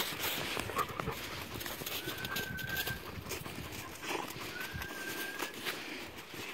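Dogs moving about in crusted snow and dry grass, with small irregular crunches, scuffs and rustles. Two thin, steady, high whines, each under a second, come about two seconds in and again near five seconds.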